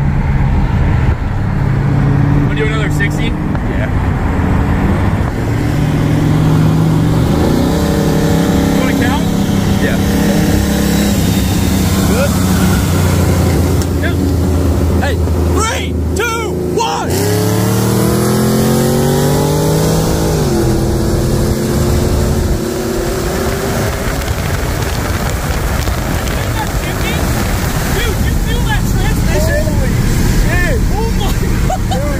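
A 2022 Dodge Challenger SRT Hellcat's supercharged 6.2-litre HEMI V8 heard from inside the cabin, pulling hard under full throttle. Its pitch climbs about seven seconds in, then climbs again from about seventeen seconds in until around twenty seconds, where it drops at an upshift.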